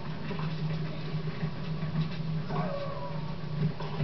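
Border collie whining: a short cry that falls in pitch about two and a half seconds in, over a steady low hum.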